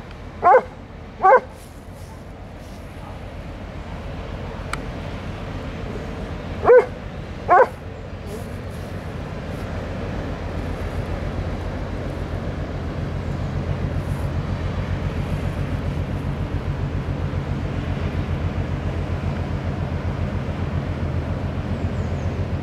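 A dog barks twice just after the start and twice more about seven seconds in. Under the barks runs the low drone of a passing inland cargo ship's diesel engine, which grows louder through the second half.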